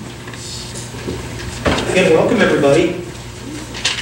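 A person's voice saying a few words that cannot be made out, about halfway through, over low room noise.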